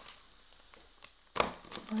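Quiet handling of a tightly taped plastic package by hand, with a faint tick or two and then one short sharp noise about a second and a half in.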